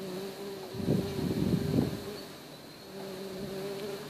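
A fly buzzing close by, its steady hum coming and going. About a second in, a louder burst of noise lasts about a second.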